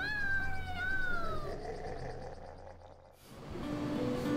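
A long drawn-out cat meow that rises, dips and rises again before falling away over about a second and a half. The sound then fades almost to nothing, and acoustic guitar music starts near the end.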